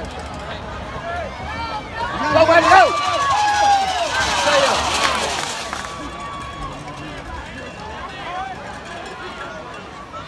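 Football spectators and sideline players yelling and cheering, loudest from about two seconds in until about six seconds, then dying down to scattered voices.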